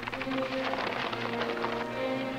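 Background music of long held chords.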